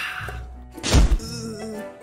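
Background music with a single heavy thunk about a second in: a cartoon impact sound effect of a bicycle landing hard after riding down a flight of stairs.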